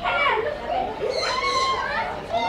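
Young children's high-pitched voices calling out and chattering.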